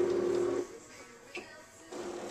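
A woman humming one steady, held note that stops about half a second in. Then it goes quiet apart from a single faint click.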